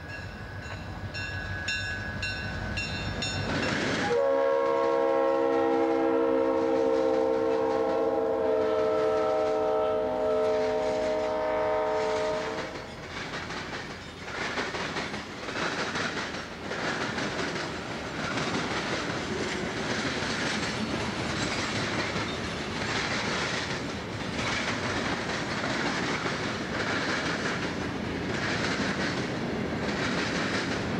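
Diesel freight train passing close by, its RF&P locomotive rumbling, then sounding a long multi-tone horn blast of about eight seconds starting about four seconds in. After that comes the steady clickety-clack of tank cars and gondolas rolling past.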